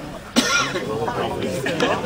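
A person coughs sharply about a third of a second in, followed by voices talking.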